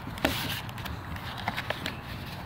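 Metal pistol being pushed into a leather holster and handled on wooden boards: one sharp click about a quarter second in, then a few faint knocks near the end.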